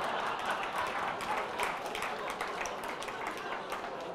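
An audience laughing and clapping in response to a joke, the laughter and applause slowly dying down.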